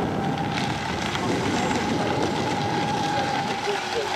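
Fast-electric RC rigger boat running flat out across the water: a steady high whine from its motor and propeller over a rushing hiss.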